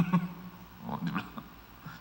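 A man laughs, loud and short at first, then trailing off into quieter chuckles.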